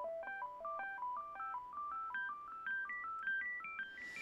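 Programmed synthesizer arpeggio: a quick run of soft, clean notes climbing up the scale. Its quiet overtones give it a warm and gentle tone.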